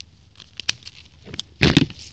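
Grass and leaves rustling and crackling as a hand pushes through low vegetation at ground level, with scattered small snaps and a louder rustle near the end.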